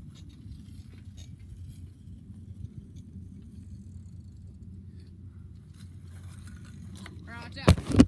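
Low, steady wind rumble buffeting a device's microphone, then a single loud knock near the end as the filming device is grabbed and picked up.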